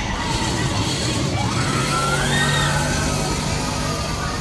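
Theme-park background of mixed voices and music-like tones, with a steady low hum setting in about halfway.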